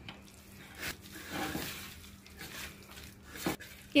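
A hand mixing raw chicken pieces with spice powders in a steel bowl: soft, irregular squishing and rustling strokes, one sharper knock near the end.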